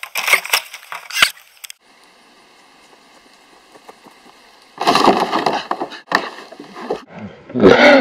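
Quick footsteps on grass and a sharp knock in the first couple of seconds, then after a quiet gap about two seconds of loud knocking and scraping: a body landing on a plastic sled laid across plastic barrels.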